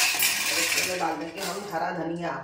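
A sharp metallic clink of stainless-steel kitchenware at the start, then more clattering of metal utensils and dishes.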